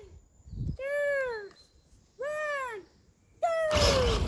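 A child's high-pitched voice calling out a race countdown in long, drawn-out calls about a second and a half apart, each rising then falling in pitch. The last call, the "go", comes near the end, and a burst of noise starts with it.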